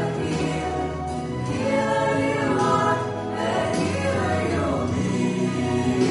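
A mixed group of male and female singers performing a worship song in harmony, with instrumental accompaniment, sung phrases held and gliding in pitch over steady bass notes.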